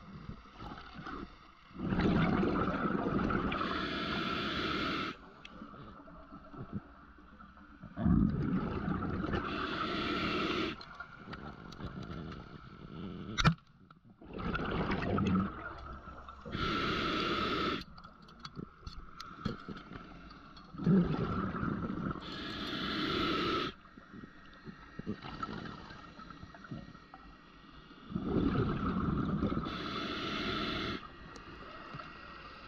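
Scuba diver breathing through a regulator underwater: about every six seconds a burst of exhaled bubbles and regulator hiss, five breaths in all. A single sharp snap about halfway through, as the speargun is fired.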